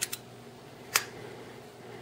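Light metal clicks from a Quartermaster McFly II butterfly knife as its handles are closed and latched: two soft clicks at the start and one sharper click about a second in.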